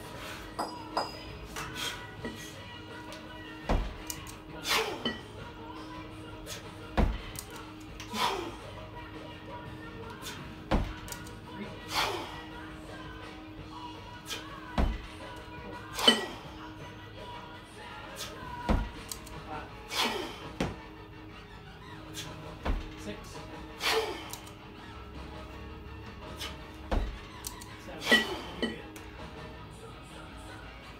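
Two 20 kg competition kettlebells knocking and clinking with each rep of a double kettlebell jerk. Each rep gives a low thud and a clink about a second apart, about once every four seconds. Music plays underneath throughout.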